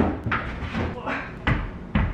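Knocks and bumps of a table's expansion leaf being pulled out of a closet, with a sharp knock about one and a half seconds in and another just before the end.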